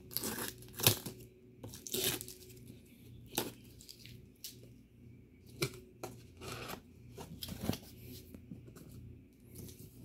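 Cardboard gift box being opened by hand: irregular scraping, rubbing and tearing of cardboard as the lid flaps are worked loose and pulled open.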